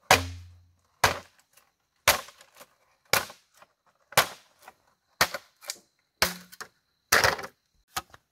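Machete chopping a bamboo pole: sharp cracking strokes about once a second, several followed by a lighter second stroke.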